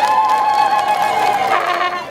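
Voices holding one long drawn-out call, falling slightly in pitch and fading out near the end.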